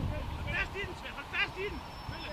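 Football players calling out to each other during a training drill: a few short shouts, about half a second in and again near the middle, over a low rumble.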